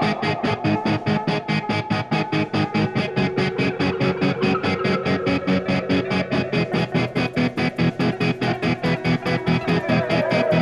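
Instrumental rock band playing live with electric guitar, bass and drums in a fast, even, driving pulse.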